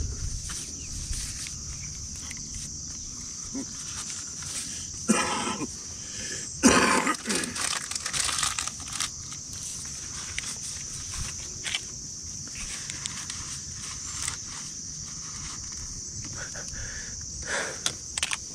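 Insects droning steadily at a high pitch from the lake's vegetation. Two short, louder sounds with pitch come about five and seven seconds in.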